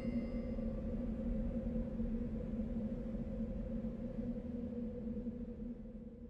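A steady, low musical drone with a deep rumble beneath it and faint high ringing tones that die away early. It starts to fade out near the end.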